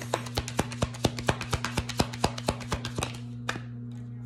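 A deck of tarot cards being shuffled by hand: a quick run of crisp card clicks, about six a second, that stops about three seconds in, over a steady low hum.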